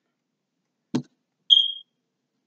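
A single short click, then about half a second later one short, high-pitched electronic beep.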